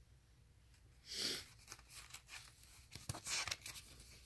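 Paper pages of a CD insert booklet being handled and turned: a brief papery rustle about a second in, then a quicker flurry of crinkles and small clicks near the end.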